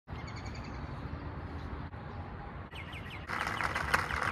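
Small birds chirping over a steady outdoor background hiss. The chirping grows louder and denser about three seconds in.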